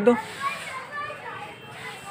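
The end of a spoken word, then faint background voices and murmur in a busy shop.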